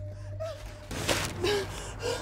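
A young woman gasping and breathing hard, with short strained voiced cries, starting suddenly about a second in after a quieter stretch; a low steady hum runs underneath.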